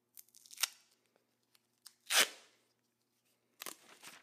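Strips of tape ripped off a patterned roll: a short rip about half a second in, a louder, longer rip about two seconds in, and another near the end, with hands handling the tape between.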